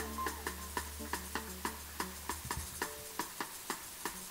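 A hand shaker played in a steady beat, about three and a half strokes a second, over a held low keyboard note that drops out a little over halfway through.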